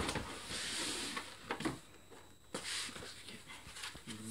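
Cardboard packaging being handled as a box is closed up: hissy rustling and sliding of cardboard, with a few light knocks.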